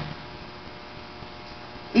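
Steady electrical mains hum with a faint hiss, the background of an amplified microphone recording.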